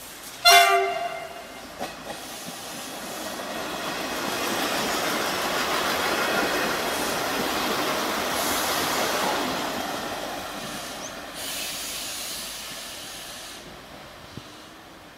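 V/Line Sprinter diesel railcar sounding one short horn blast, then its engine and wheels passing close by, the rumble building to a peak midway and fading away.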